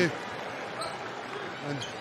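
Steady murmur of a large indoor arena crowd during a break in play.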